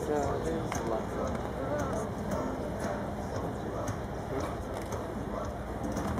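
A horse's hoofbeats at a canter on a sand arena, over a steady background of indistinct voices.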